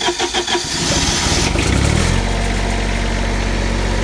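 Generator engine on a trailer-mounted light tower being started: the starter cranks with an even rhythmic chug, the engine catches about a second in, climbs in pitch up to speed and settles into steady running about two seconds in.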